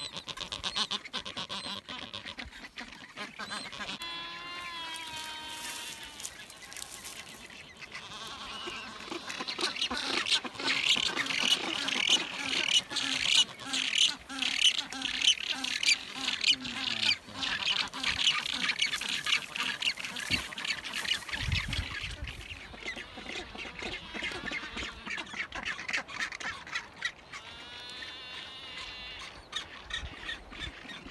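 Mixed nesting colony of rockhopper penguins and black-browed albatrosses calling: a dense chorus of harsh, rapidly pulsed calls that builds to its loudest through the middle and eases off toward the end.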